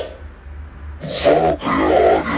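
A voice speaking a line in Portuguese, "Vá até a área da piscina", starting about halfway in, over a steady low hum.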